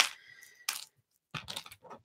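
Small plastic LEGO pieces being handled: one short click, then a quick cluster of little clicks and rattles about a second and a half in.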